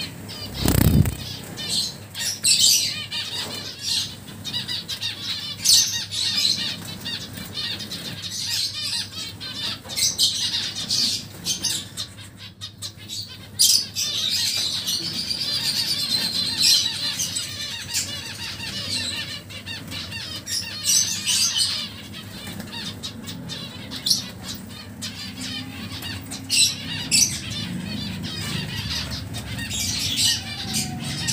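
Caged finches and lovebirds calling in many short, sharp chirps and squawks, with wing fluttering. There is a low thump about a second in.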